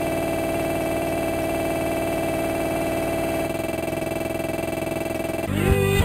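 A steady, buzzing held electronic chord, like a synthesizer or organ drone. About five and a half seconds in it cuts abruptly to a louder, busier passage with sliding pitches.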